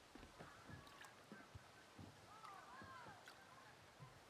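Near silence, with a few faint goose honks about two and a half seconds in and scattered soft low knocks.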